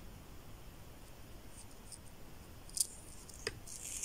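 Faint beadwork handling sounds: a needle and braided FireLine thread being worked through seed beads, with two small clicks in the second half and a soft rasp of thread drawn through near the end.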